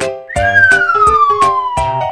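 A falling whistle-like sound effect, one tone sliding steadily down in pitch for about a second and a half, over upbeat children's background music with a steady beat.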